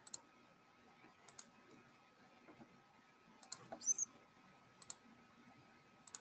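Faint computer mouse clicks, some in quick pairs like double-clicks, scattered over a quiet background, with one brief louder short sound about four seconds in.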